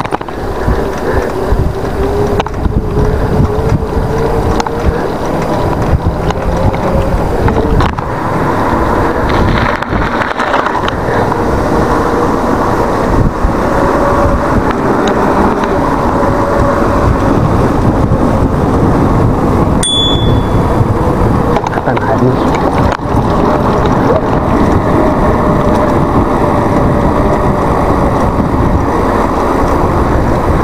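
Wind buffeting an action camera's microphone and mountain-bike tyres rolling on asphalt: a loud, steady rush with heavy rumble and a faint tone that drifts up and down in pitch. About twenty seconds in, one short, bright ding.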